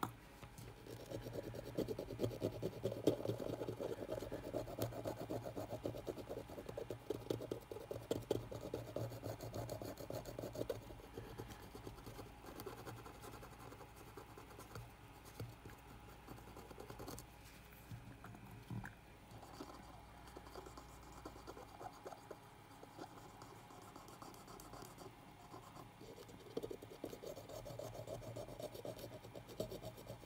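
A swab scrubbing a printed circuit board with rapid fine scratching, heaviest through the first ten seconds and again near the end. The board is being cleaned of leftover rosin and leaked capacitor electrolyte.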